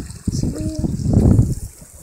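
Low rumbling wind and handling noise on a phone's microphone as the phone is turned around, dying away just before the end.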